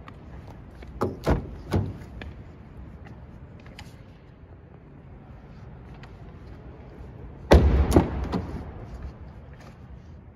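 Car doors being worked on a Honda: a few sharp latch clicks about a second in, then a solid door thud a little past halfway with a few lighter clicks after it.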